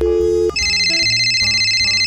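A telephone sound effect: a steady two-note dial tone for about half a second, then a high, rapidly trilling electronic phone ring, over background music.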